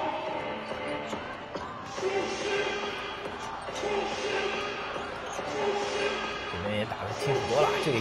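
A basketball being dribbled on an arena court, with arena music in the background.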